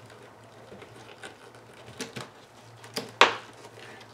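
Hands handling a helmet's ear padding with a few faint clicks, then one sharp snap a little after three seconds in as a press-stud button of the padding clicks into place. A faint steady hum sits underneath.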